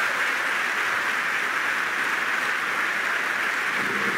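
Steady applause from a large audience, many hands clapping at once.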